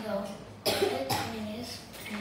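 A boy coughing: two sharp coughs close together, the first a little over half a second in, between short voiced hesitation sounds.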